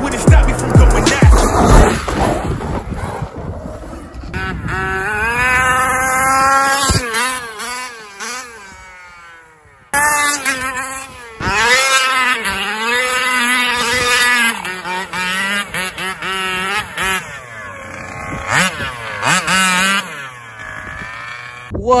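Gas engine of a large-scale RC car revving up and down hard as it is driven, its pitch rising and falling with the throttle; the sound breaks off abruptly about halfway through, then comes back. Background music fades out in the first couple of seconds.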